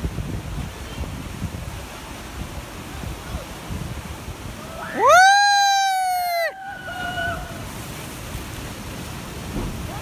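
A person's loud, high-pitched yell, about a second and a half long, rising at the onset, held steady, then falling away, about halfway through. Under it runs a steady rush of wind on the microphone and surf breaking on the rocks.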